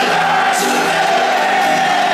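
Rock band playing live with acoustic guitars, a voice holding one long sung note, and the stadium crowd singing along.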